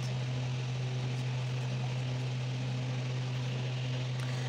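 Steady low hum with a faint even hiss behind it: background room noise, with no other distinct sound.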